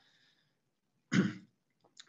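A man clearing his throat once, briefly, about a second in, picked up by a computer microphone on a video call.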